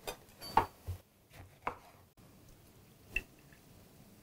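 A few sparse clicks and taps of kitchen utensils, the loudest about half a second in and a softer one around three seconds.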